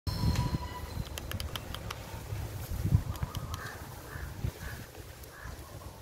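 A bird calling four times, about half a second apart, over a low rumbling noise, with a run of sharp clicks in the first half.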